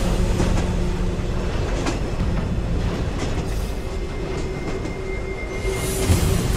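Film sound effect of a heavy transport car moving at speed: a steady, loud mechanical rumble and rattle with scattered clicks. A thin, high metallic squealing tone runs through the second half.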